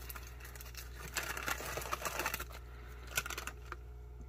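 Plastic-and-foil MRE flameless ration heater pouch crinkling and rustling as it is handled, in irregular bursts for a second or so, then a few light clicks.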